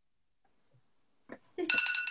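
Near silence, then near the end a phone's timer alarm starts ringing in a steady electronic tone, signalling that the drawing time is up, as a woman starts to speak.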